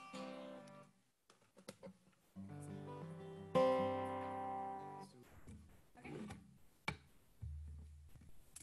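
Acoustic guitar, a few chords strummed and left to ring: one fading at the start, then after a short gap two more, the second louder, ringing for over a second, followed by a few light clicks and a low note near the end. Heard over a video-call stream.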